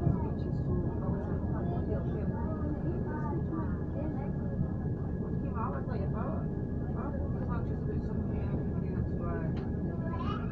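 Train running, heard inside the carriage as a steady low rumble with a faint steady high whine, while people talk indistinctly over it.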